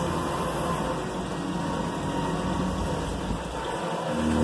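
A steady, even mechanical hum with a hiss.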